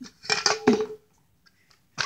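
Brief wordless child's vocal sounds, two short pitched sounds in the first second.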